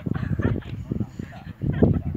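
Distant voices of footballers calling out across the pitch, over an uneven low rumble that dips briefly near the end.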